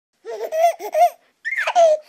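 A baby laughing: a quick run of short laughs, then a longer squealing laugh that falls in pitch.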